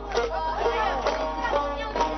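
A small plucked folk lute playing a repeating dance tune, its strokes coming about twice a second, with a wavering melody line weaving over them.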